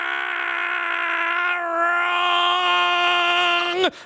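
A man's voice holding one long, steady 'aaah' at a single pitch for about four seconds, cutting off just before the end, as a mock exclamation of disagreement.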